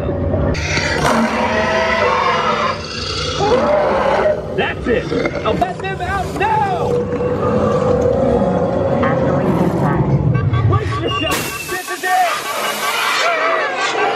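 Inside Disney's DINOSAUR dark ride: a heavy, continuous low rumble from the ride vehicle and show audio, with dinosaur roars and voices over it. About twelve seconds in the rumble cuts out and a hiss rises briefly.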